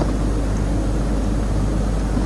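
A steady low hum and rumble with a few faint clicks.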